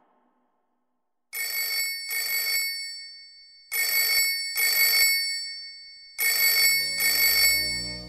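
Telephone ringing in a double ring, three pairs of short rings starting about a second in, each pair about a second and a half long.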